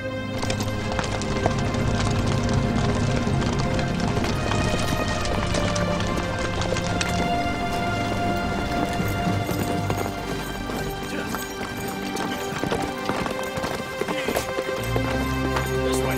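Hooves of many horses clattering at a run, over background music with sustained notes.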